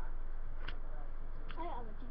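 Steady low background hum with a single sharp click a third of the way in, then a child's voice starting briefly near the end.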